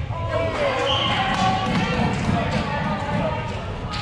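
Floorball game in a sports hall: players' shouting voices with the taps and knocks of sticks, ball and running feet on the hall floor, and a sharp click near the end.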